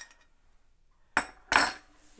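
Two sharp clinks of a metal teaspoon against ceramic, about a second in and again a moment later, the second louder with a short ring.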